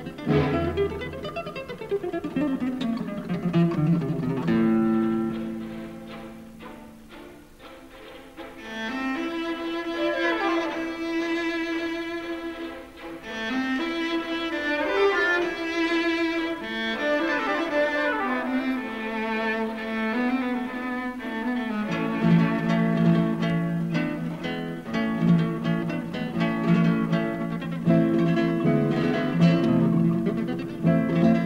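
Classical music: string orchestra with guitar. Quick runs sweep downward through the middle, and the strings settle into fuller, louder low chords about two-thirds of the way in.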